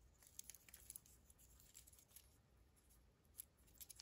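Near silence, with a few faint light clicks and rustles from hands handling a small plastic 1/6-scale machine-gun tripod mount and its strap.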